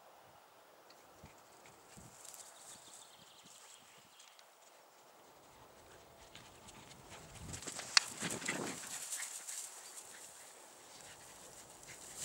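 Poodles scuffling and rustling through dry grass as they play, faint at first and louder from about seven seconds in, with one sharp click near eight seconds.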